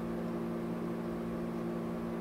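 Steady background hum made of a few constant low tones over a faint hiss, unchanging throughout.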